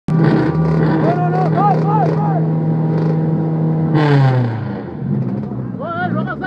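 Tuned four-cylinder car engine held at a steady raised rev while staged at a drag-race start line, then the revs drop away about four seconds in.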